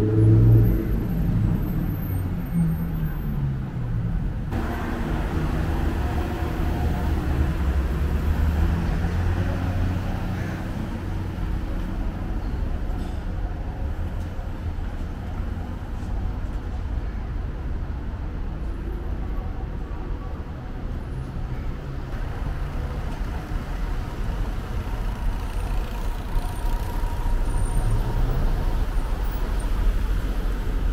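Road traffic on a busy multi-lane city street: cars running and passing close by, a steady low rumble with engine tones. It is loudest in the first second as a vehicle goes by.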